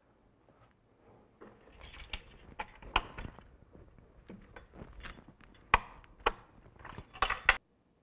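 A holster-forming foam press being closed and clamped over hot Kydex: scattered clicks and knocks from its metal lid and latch, with one sharp knock a little before six seconds and a quick run of clicks near the end.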